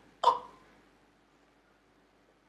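A woman's single short, startled "oh!" exclamation, then quiet.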